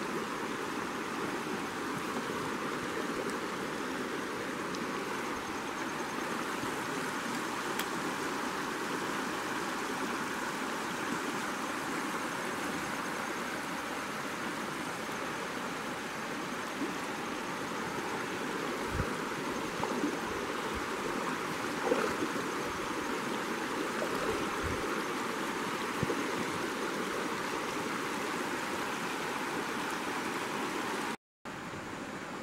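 Shallow river riffle: water rushing steadily over and between rocks. A few soft low bumps come about two-thirds of the way through.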